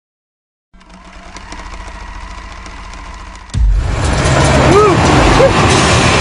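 Engine and road noise of a moving tuk-tuk heard from inside the passenger cab, starting abruptly and loud about three and a half seconds in, after a quieter steady hum.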